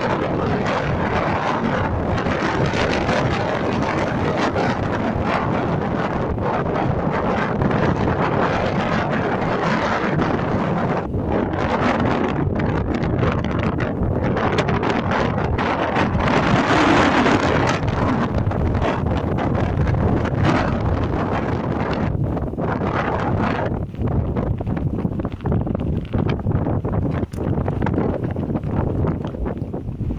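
Strong gusty wind buffeting the microphone: a loud, continuous rushing rumble. The strongest gust comes a little past halfway, and the wind turns choppier, with brief lulls, near the end.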